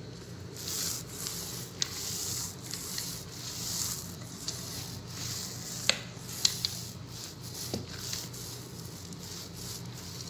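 Wooden rolling pin rubbing back and forth over a sheet of white dough, in repeated rubbing strokes about once a second, with a few sharp clicks; the loudest clicks come about midway.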